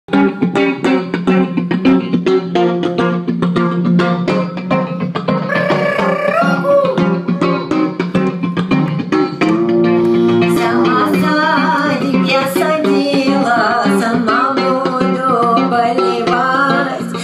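A live band playing, with drums, plucked strings and a steady low drone note. A woman's singing voice comes in about five seconds in.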